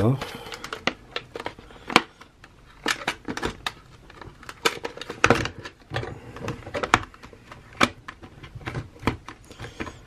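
Clear plastic action-figure packaging being handled while twist ties are worked off. The plastic crinkles irregularly, with sharp clicks and crackles at uneven intervals.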